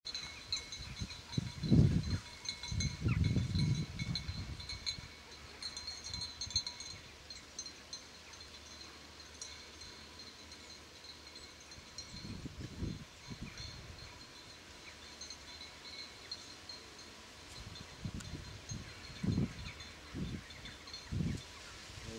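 Gusts of wind buffeting the microphone in low rumbling bursts, the strongest about two seconds in and again a second later, with weaker ones near the end. Behind them, a faint, thin, high tinkling ringing comes and goes.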